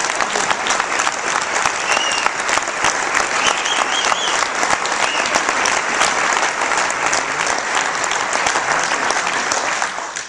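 Audience applauding steadily for about ten seconds, following a speaker's applause line, and dying away at the end.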